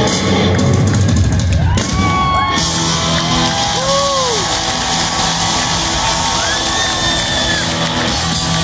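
Rock band playing live in an arena, heard loud from the audience: held chords with bass and drums. Crowd whoops and cheers rise and fall over the music several times.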